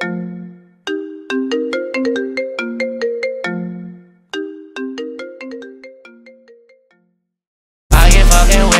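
Mobile phone ringtone: a short marimba-like melody repeated twice, each phrase dying away, the second fading out about seven seconds in.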